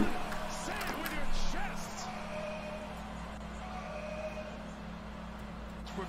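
Basketball game broadcast audio with faint commentary and arena sound, a sudden loud thump right at the start, and a man shouting in excitement about a second and a half in.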